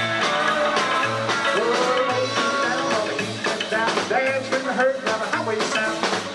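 Live rock and roll band playing, with electric guitar over a steady bass line and drums.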